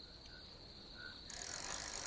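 Faint rattling of a fuchka vendor's pushcart on spoked wheels as it rolls along, growing louder from about halfway.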